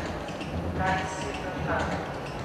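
Short voice-like sounds from a robot's horn loudspeaker, one about a second in and another near the end, with no clear words, over a steady low hum.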